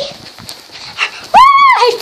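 A child's short, high squeal, rising then falling in pitch, about a second and a half in, after a couple of soft knocks.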